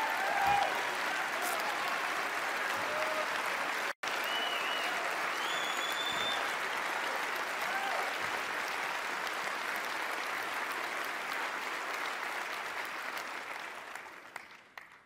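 A large congregation applauding, with a few short shouts and cheers over the clapping. The applause fades away near the end, with a momentary break in the sound about four seconds in.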